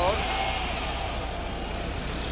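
A car engine revved once, rising and then falling over about a second, before running on steadily. The rev is a check for a rasping noise that the owner says shows only when accelerating.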